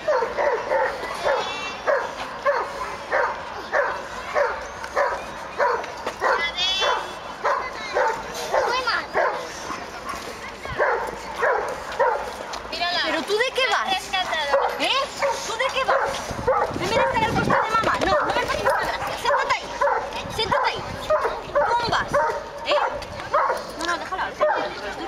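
Young pit bull puppy yelping and whining over and over, about two short high cries a second, as it squirms while being carried.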